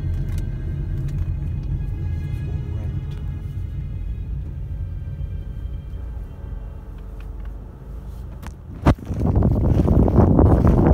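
A car's low road rumble heard from inside the cabin while driving, with quiet music that fades away over the first several seconds. Just before the end there is a sharp click, then loud wind noise on the microphone.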